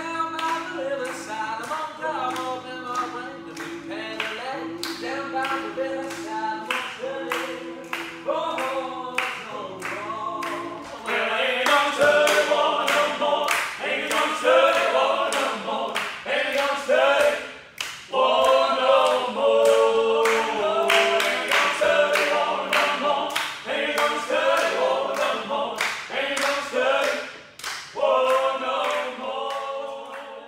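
Several voices singing together in harmony over an even beat of about two strokes a second. About eleven seconds in it becomes louder and fuller as the band plays along with acoustic guitar, drums and tambourine, drops briefly near the middle, and fades out at the end.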